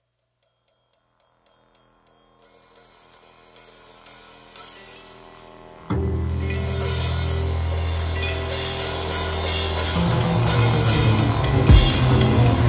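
Opening of a grunge-funk rock song. After a couple of seconds of silence a quiet rhythmic part fades in and builds, then about six seconds in the full band comes in with drum kit and cymbals, getting louder toward the end.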